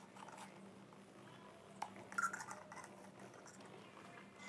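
Faint sipping and swallowing of a melted iced frappuccino through a plastic straw, with a short slurp about two seconds in.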